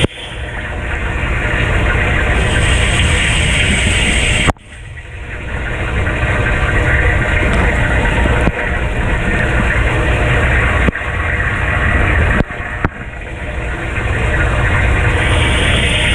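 Kenmore dishwasher in its wash phase with the upper spray arm running: water jets splash over the dishes and onto the camera over the steady hum of the pump. The sound cuts out suddenly several times and swells back each time.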